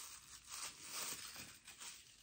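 Faint rustling and crinkling of packaging handled by hand while items are taken out of a kitchen scale's box, with a few soft clicks.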